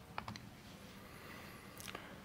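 A few faint key clicks, two or three close together about a quarter second in and one more near the end, as the presentation slide is advanced; between them only faint room tone.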